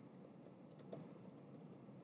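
Near silence: low room hum with a few faint computer-keyboard clicks about a second in.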